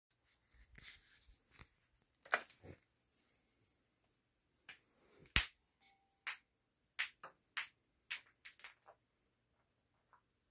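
A series of short, sharp clicks and taps with no voices. The loudest comes about five and a half seconds in, followed by a quicker run of them over the next three seconds.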